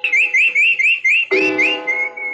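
A pet bird chirping, a string of short rising chirps about four a second, over a held chord of music that drops back and swells in again past the middle.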